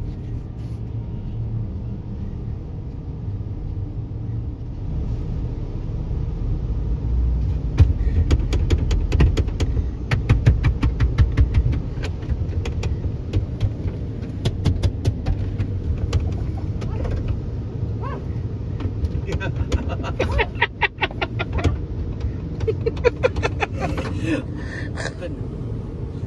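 Tunnel car-wash machinery and the idling car, heard from inside the cabin: a steady low rumble. About a third of the way in, a rapid run of sharp clicks and spatters starts and lasts over ten seconds.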